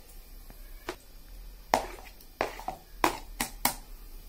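A steel spoon clicking and scraping against a plastic plate and a stainless-steel mixer jar as tender coconut flesh is spooned in: about six sharp clicks spread through the few seconds.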